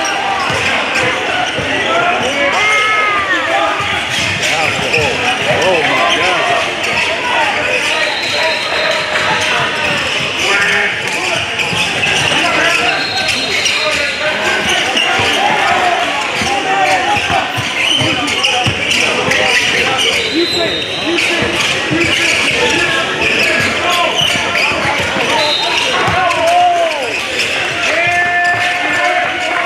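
Live gym sound of a basketball game: a basketball dribbled on a hardwood court, with players and spectators calling out throughout in a large, echoing hall.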